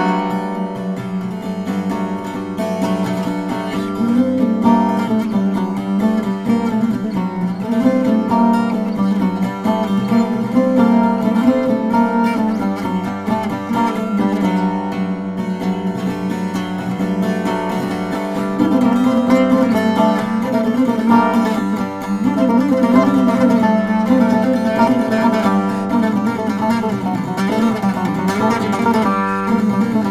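Solo Greek lute (laouto) picked with a plectrum, playing a continuous melody in a syrtos dance tune, with a low note ringing steadily underneath.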